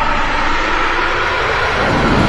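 Cinematic intro sound effect: a loud rushing whoosh, rumbling like a passing aircraft, swelling to its peak near the end.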